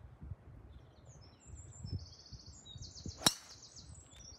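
A golf driver striking a ball off the tee: one sharp crack about three seconds in. Birds sing throughout.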